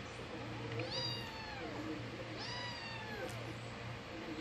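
Domestic cat meowing twice, two long calls about a second and a half apart, each falling in pitch.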